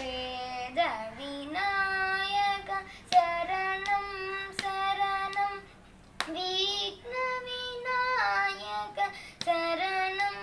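A boy singing a Ganesh devotional song unaccompanied, holding long, steady notes in phrases with short breaths between them. A few sharp clicks fall between the phrases.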